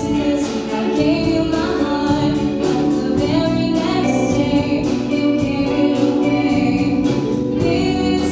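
Live rock band playing a song: a female lead vocal over electric guitars and drums, with a steady beat.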